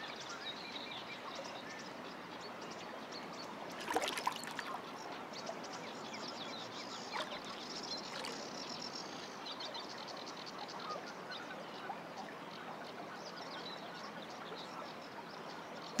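Quiet waterside background with small birds chirping faintly, and one brief louder sound about four seconds in.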